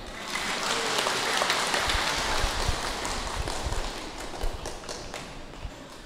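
Audience applauding, a dense patter of many hands clapping that thins and dies away over the last two seconds or so.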